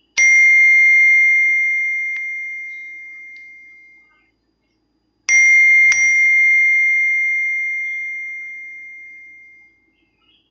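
Two iPhone-style notification tones played from a ringtone app. First a single bell-like chime that rings out and fades over about four seconds. Then, about five seconds in, a tone of two quick chimes half a second apart that also fades away.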